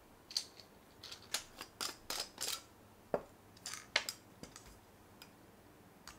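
Small stainless-steel parts of a GeekVape Tsunami 24 RDA being handled and set down: a quick run of light metallic clicks and scrapes that stops about four and a half seconds in.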